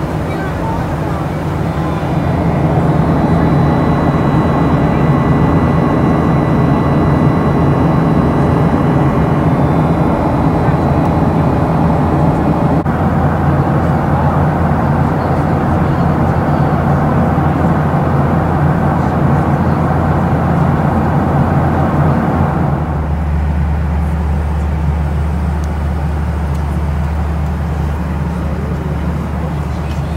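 Boeing 737-700 cabin noise: the steady roar of the CFM56-7B engines and airflow, heard from a passenger seat, with faint thin whines above it. The sound shifts abruptly about halfway through. It shifts again near the end, becoming a deeper, duller drone.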